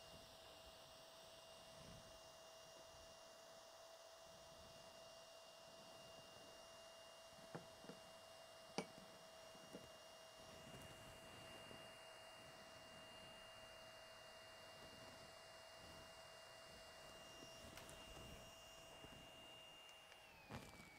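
Near silence: room tone with two faint, steady high tones, like an electronic whine, and a few faint small clicks about seven and a half and nine seconds in.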